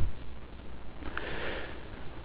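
A soft breath drawn in through the nose, with faint room noise.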